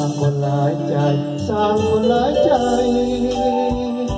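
A man singing a melody into a handheld microphone over recorded backing music with bass and drums.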